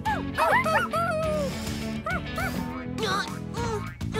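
Animated puppies' short barks and yips in quick clusters over upbeat background music.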